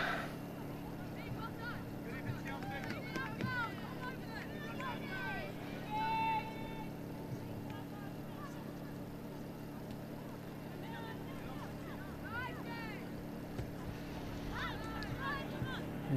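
Distant shouts and calls of footballers on the pitch, one held call louder about six seconds in, over a steady low hum.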